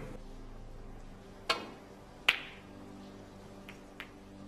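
Two sharp clicks a little under a second apart, the second ringing briefly, then a faint click near the end, over the low steady hum of a hushed snooker arena.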